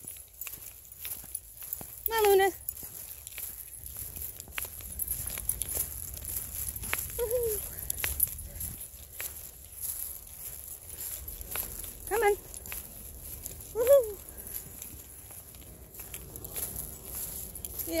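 Footsteps walking on a muddy woodland trail, with four short voice calls: a loud one about two seconds in, a brief falling one about seven seconds in, and two close together about twelve and fourteen seconds in, the last the loudest sound of the stretch.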